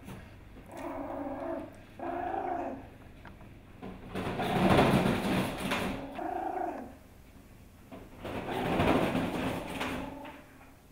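Pomeranian puppy making short, high whimpering growls, three in all, with two longer, louder noisy sounds between them, one in the middle and one near the end.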